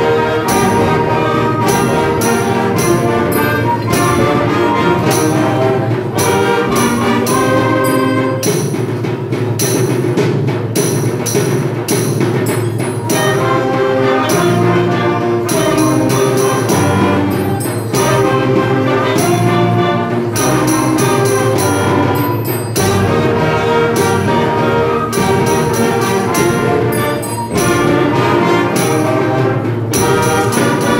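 Student intermediate concert band, with saxophones, brass and percussion, playing a Renaissance-style piece.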